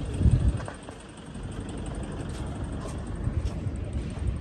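Outdoor background noise with a low rumble, louder in a short burst near the start and then steady.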